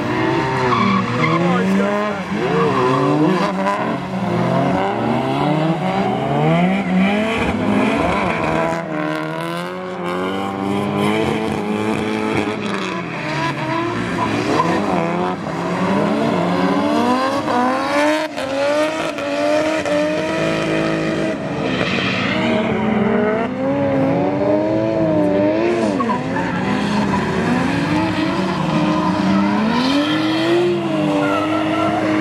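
Drift cars' engines revving hard through a wet corner, with tyres skidding. The pitch climbs and falls again and again as the drivers work the throttle, and several engines overlap at once.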